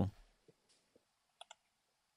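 Near silence in a pause between speakers, broken by two faint short clicks in quick succession about one and a half seconds in.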